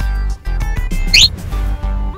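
Upbeat boogie-woogie background music with a steady beat. About a second in, a short rising whistle-like sound effect plays over it.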